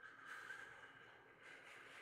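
A man's slow, deep breath, faint and drawn out over about two seconds, modelling the deep breathing he has just asked for.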